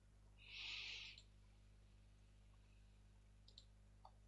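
Near silence with a low steady hum, broken by one brief, soft hiss about half a second in and a couple of faint clicks near the end.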